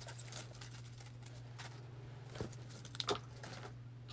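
Faint rustling and light taps of hands handling artificial greenery, berry picks and fabric strips on a craft table, with a couple of slightly sharper taps past the middle, over a steady low electrical hum.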